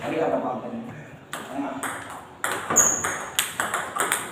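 Table tennis rally: a ping-pong ball clicking sharply off the paddles and the table, about two hits a second from about a second in.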